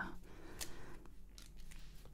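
Faint hiss from a sensitive microphone, with one soft sharp click about half a second in and a few fainter ticks, like small handling noises.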